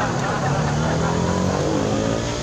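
A motor vehicle's engine running close by, its pitch drifting slowly as it goes.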